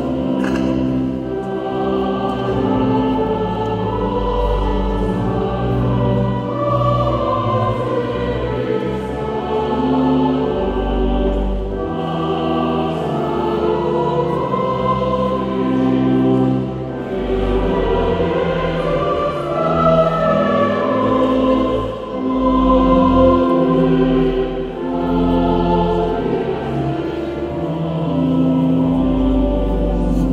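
Choir singing a slow hymn with pipe organ accompaniment, long held chords over sustained deep bass notes, in a reverberant cathedral.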